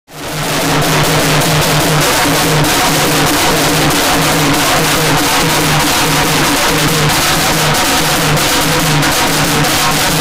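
Loud, dense street drumming from a Holi band playing for dancers, the drum strikes packed closely together over a low pitched pulse that repeats in an even rhythm.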